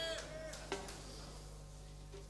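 A voice calls out briefly and trails off about half a second in, followed by a single sharp click, over a steady low electrical hum.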